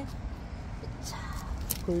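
A steady low background rumble with a few brief rustling sounds partway through; a voice starts speaking right at the end.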